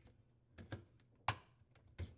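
Dishwasher water guide being snapped into its mounting brackets: a few light, separate plastic clicks, the sharpest a little past halfway.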